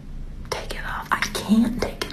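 A voice talking softly, partly in a whisper, with no words clear enough to make out.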